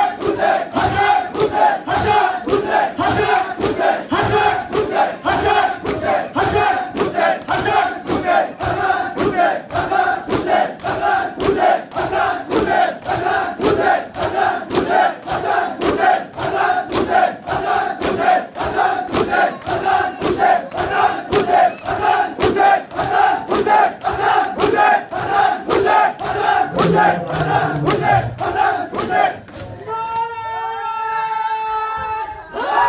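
Crowd of men doing sina zani matam: open hands striking chests in unison in a steady beat, a little under two strokes a second, with massed voices calling out together on the strokes. The beating stops just before the end.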